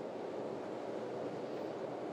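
Steady, featureless hiss of room tone, with no speech or distinct events.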